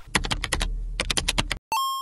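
Computer keyboard typing sound effect: about a dozen quick key clicks in two runs, followed near the end by a short, steady electronic beep.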